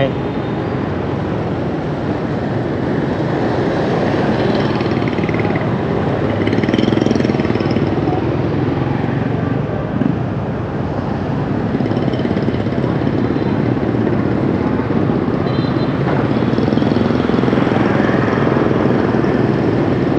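Steady traffic noise from riding a motorbike through dense city traffic: motorbike engines and road noise, fairly loud throughout.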